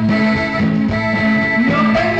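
Live band playing an instrumental passage led by a button accordion, over electric bass, acoustic guitar and drums.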